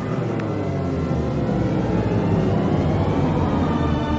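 Logo-reveal sound effect under music: a loud whooshing, rumbling swell with many gliding tones. Near the end it settles into a steady held chord.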